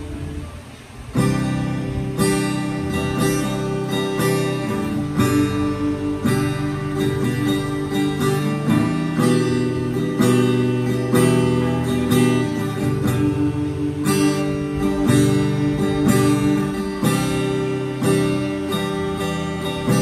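Steel-string acoustic guitar strummed in steady chords. The sound dies down briefly and the strumming starts again about a second in.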